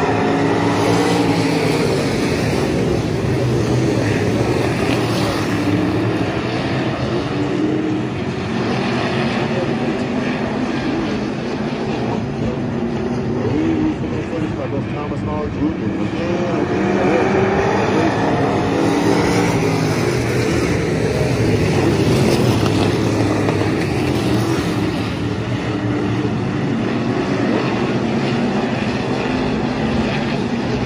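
A pack of IMCA stock cars racing on a dirt oval, their V8 engines running hard together. The pitch rises and falls again and again as the cars lift and accelerate through the turns and the field sweeps past.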